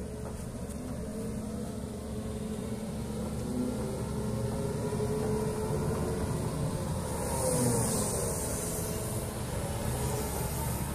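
Atlas 160W wheeled excavator's diesel engine running as the machine drives closer, growing steadily louder, its pitch shifting slightly about three-quarters of the way through, with a brief hiss at the same point.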